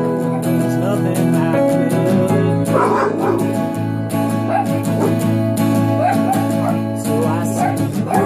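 Acoustic guitar strummed steadily with a singing voice over it, including a brief wavering, yelping vocal sound about three seconds in.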